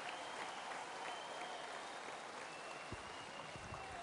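Faint, steady applause from an audience.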